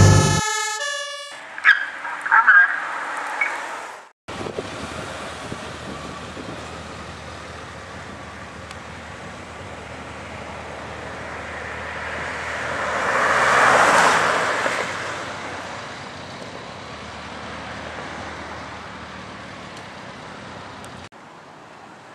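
Emergency vehicles on call. A few short loud bursts come in the first seconds. Then an ambulance with blue lights on approaches and drives past, its sound rising to loudest about ten seconds in and then fading.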